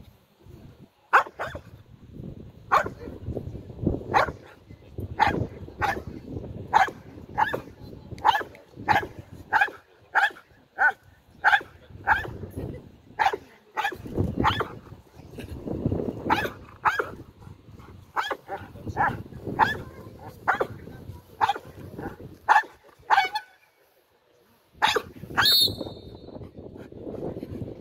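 Belgian Malinois barking repeatedly at a decoy in a bite suit, about one to two sharp barks a second for over twenty seconds: a dog guarding and barking at the decoy in protection-sport training. The barking stops a few seconds before the end, followed by a brief shrill, high-pitched sound.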